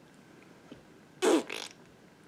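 A woman's short, buzzy vocal noise made through her lips, falling in pitch, once a little past halfway.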